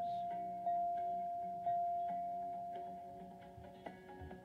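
Game-show puzzle board's letter-reveal chime: a single-tone ding struck about once a second, each one ringing and fading. It marks the given letters R, S, T, L, N and E being turned up on the board; the last ding fades out over about two seconds.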